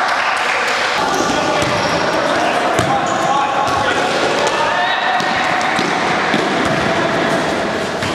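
Indoor five-a-side football in play: several voices shouting over one another, with scattered sharp knocks of the ball being kicked and bouncing on a hard floor.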